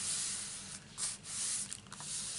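Hands sliding and smoothing over sheets of paper on a work surface: a soft swishing rub, in two strokes.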